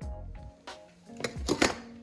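Background music, with a short clatter of knocks about one and a half seconds in as a stainless steel bowl of dry kibble is set down into a raised feeder stand.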